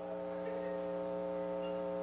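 Steady electrical mains hum with a stack of even buzzing overtones, unchanging throughout: the background hum carried on this old live-theatre recording.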